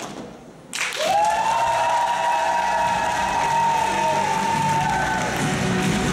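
Audience applauding and cheering as a stage dance number ends: the music stops, and about a second later clapping breaks out with high, long-held cheers over it.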